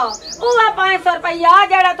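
A woman speaking in a high-pitched, excited voice, her pitch sweeping sharply down near the start.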